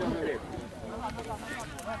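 Shouting voices at a football match: several players and onlookers calling out at once, overlapping, with no clear words.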